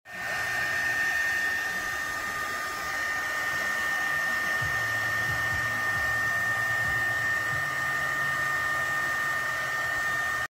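SEEKONE 350 W mini heat gun running: a steady rush of blown air with two steady high whining tones from its fan motor.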